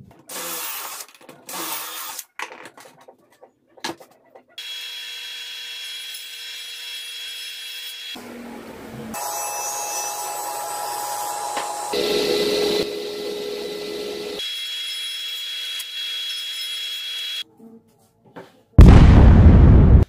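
Two short bursts of drilling with a pocket-hole jig, then a table saw running and ripping a plywood sheet, a long steady whine that shifts in tone several times. Near the end, a loud burst of noise about a second long.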